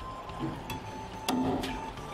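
A cleaver chopping meat on a wooden cutting board: three or four separate chops, the loudest just past halfway. Background music plays underneath.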